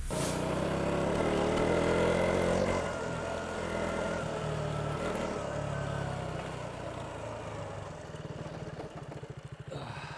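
KTM Duke single-cylinder motorcycle engine running as the bike rides across grass and slows, its sound easing down. Near the end it settles to an idle with even pulses.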